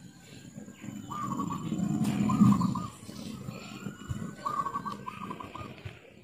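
A caged wild dove cooing in several short phrases, over a low rumbling background noise that swells around the middle.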